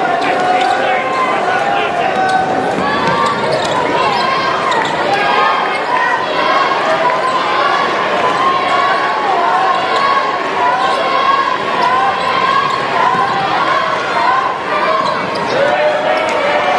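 A basketball bouncing on a hardwood court during play, over the steady, loud din of many voices from the crowd and bench in a large arena hall.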